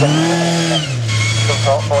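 Autograss special race car's engine running hard on a dirt track, its note stepping down in pitch about a second in. Commentary is heard over it near the end.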